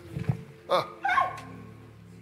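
A man's short, loud exclamation of "Ah!" during laying-on-of-hands prayer, followed by a brief cry that falls in pitch, over a soft held keyboard chord. A few low thumps come just before the shout.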